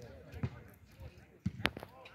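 Football being kicked during play: three short thuds, the sharpest about one and a half seconds in.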